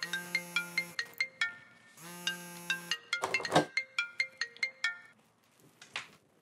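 Mobile phone ringing with a melodic ringtone: a held chord followed by a run of quick short notes, played twice. A brief swish sounds about three and a half seconds in, and the ringing stops about five seconds in as the call is answered.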